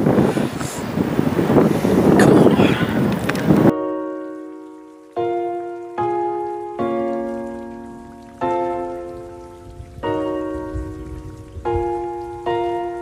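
Wind buffeting the microphone for about three and a half seconds, then a sudden cut to background music: slow chords, each struck sharply and left to fade, roughly one a second.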